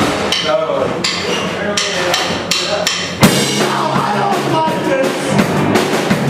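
Live rock band playing, with electric guitars and a drum kit. A run of sharp drum hits leads to a very loud hit about three seconds in, after which the full band plays on.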